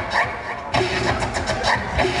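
Turntable scratching: a record sample dragged back and forth by hand and chopped into short cuts with the mixer, with a steady low beat underneath. The cuts grow sharper and denser under a second in.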